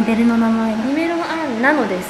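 A woman humming a tune: one note held for almost a second, then rising and wavering up and down near the end.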